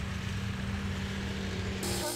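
A small engine running steadily at one even pitch, with a low rumble underneath.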